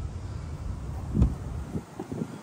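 Wind rumbling on a phone microphone, with a soft thump about a second in.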